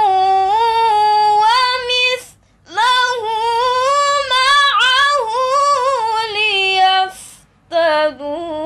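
A teenage girl reciting the Quran in melodic tilawah style, unaccompanied. She holds a long, steady note, pauses for a short breath about two seconds in, then sings a long phrase with rising and falling ornamented turns that ends a little after seven seconds.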